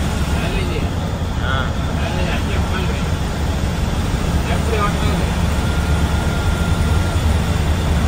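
Steady low drone of a sleeper coach's engine and tyres on the highway, heard from inside the moving bus. Faint voices come through over it now and then.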